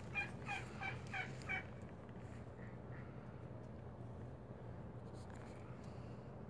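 A bird calling: a quick series of about seven short, evenly spaced pitched notes in the first second and a half, then only a faint low hum.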